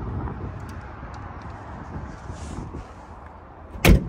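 A car hood slammed shut once, loud and sharp, near the end, over a steady low rumble.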